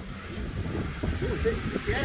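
Low rumble of wind on the microphone, with faint voices in the background and a thin high whine rising slowly in pitch.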